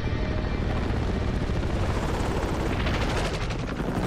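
Military helicopter rotors beating with a deep, pulsing rumble. Near the end a fast rattle of sharp clicks rises over it.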